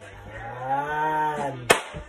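A man's voice holding one long, low, wordless vocal sound that rises and then falls in pitch, ended by a sharp click near the end.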